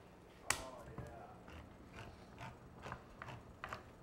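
Hand-held can opener being worked around a can of tomato sauce: a sharp click about half a second in, then faint irregular clicks.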